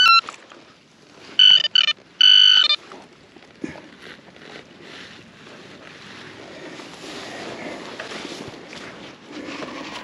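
Metal detector sounding on a buried target: two loud electronic tones, each about half a second long, starting about a second and a half in. They are followed by soft scraping and rustling of soil and grass as the hole is worked. The target turns out to be a silver florin.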